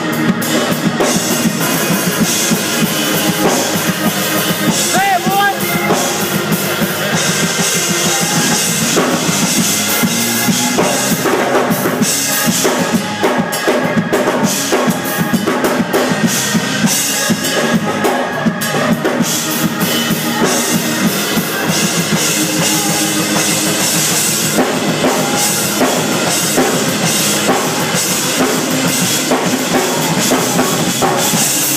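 A drawbar console organ and a drum kit playing music together, with steady drumming on kick, snare and cymbals under the organ's sustained chords.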